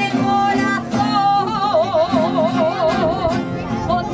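Aragonese jota de picadillo sung by a singer over strummed plucked-string instruments and accordion. About a second and a half in, the singer holds one long note with a wide vibrato for about two seconds.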